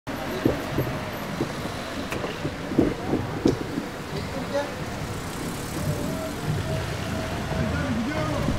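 Street noise with car engines running, faint indistinct voices, and several sharp knocks in the first few seconds.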